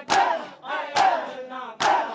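Crowd of men doing matam: bare chests struck by open hands in unison, three sharp slaps a little under a second apart. After each slap the crowd lets out a loud chanted shout.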